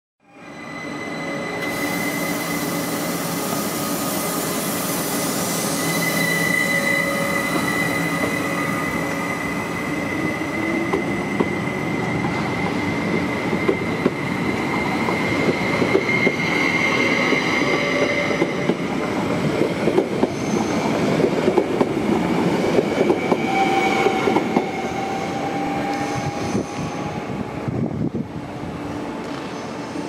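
A Südostbahn Traverso, a Stadler FLIRT electric multiple unit, pulling out of a station and running past. Its electric running gives a steady high whine of several tones over the rumble of the wheels. From about ten seconds in, quick clicks and knocks of the wheels over rail joints and points come in, and they thin out near the end as the train draws away.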